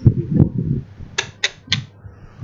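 Three sharp clicks in quick succession, about a quarter of a second apart, a little over a second in, following low muffled rumbling at the start.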